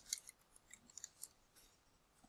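Faint computer keyboard typing: a handful of quiet key clicks, most of them in the first second, with a few more near the end.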